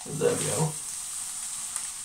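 Rustling and crinkling of a disposable hair-treatment cap as it is pulled on and adjusted over the head.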